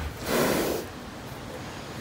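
A horse blowing a short breath out through its nostrils close to the microphone, once, lasting about half a second near the start.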